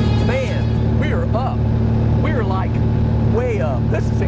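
Small propeller plane's piston engine running with a steady, loud low drone, with short voice sounds rising and falling over it about once a second.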